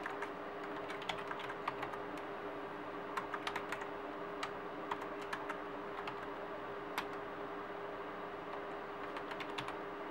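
Computer keyboard being typed on: irregular, scattered keystrokes with a gap of about two seconds near the end, over a steady hum.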